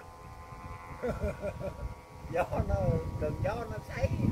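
Voices talking at a distance over a low wind rumble on the microphone.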